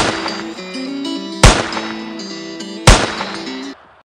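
Three gunshot sound effects, about a second and a half apart, each ringing off, over acoustic guitar intro music. The music stops shortly before the end.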